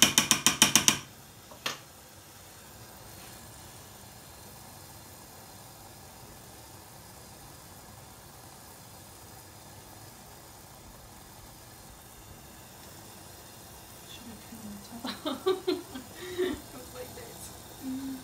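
A metal spoon stirring fast inside a tin can of melted candle wax, clinking against the can's sides about seven times a second, stops about a second in. Then only low room noise.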